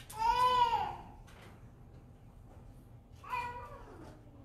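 An infant crying out twice: a loud wail that rises and falls in pitch for just under a second at the start, and a shorter cry near the end.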